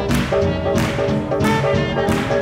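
Up-tempo swing jazz with brass playing, punctuated by sharp accented hits that recur at a steady spacing.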